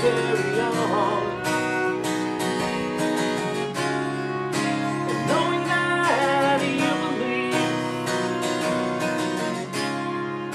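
Acoustic guitar strumming chords in a steady rhythm, with a fiddle playing a wavering melody over it that rises about a second in and again near the middle, in a country-style song.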